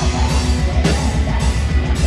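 Metal band playing live: distorted electric guitars and bass over drums, loud and dense.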